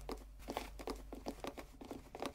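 Hurried footsteps, a rapid, irregular patter of short steps over a faint low hum.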